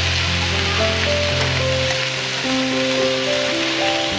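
Tomato wedges and sliced onion sizzling in hot oil in a frying pan, a steady dense hiss, under background music of held keyboard notes.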